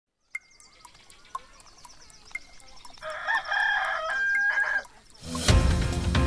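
A clock ticks about four times a second and a rooster crows once, about three seconds in: a morning wake-up effect under a countdown to 7:00. Music starts loudly near the end.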